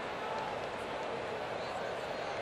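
Ballpark crowd murmur: a steady, even hum of many distant voices.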